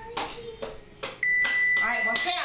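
Whirlpool electric range's timer sounding its end-of-countdown alert as the timer runs out: a steady, high, single-pitched beep that starts a little over a second in and holds.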